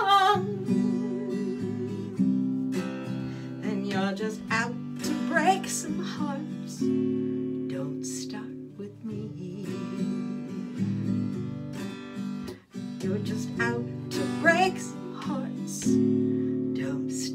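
Acoustic guitar strumming the chords of a slow cha-cha song, with a few short sung notes over it.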